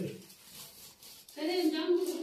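Speech: a voice trailing off at the start, about a second of quiet room tone, then a voice speaking again from about one and a half seconds in.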